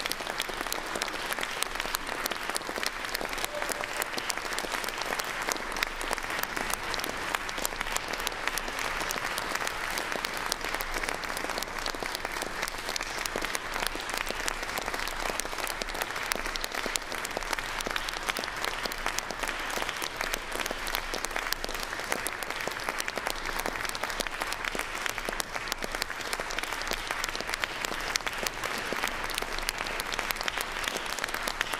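Concert audience applauding: sustained, steady clapping from a full hall, with no let-up.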